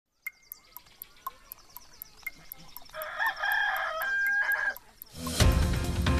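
Clock ticking about four times a second, with a rooster crowing about three seconds in; near the end, theme music with a heavy beat comes in.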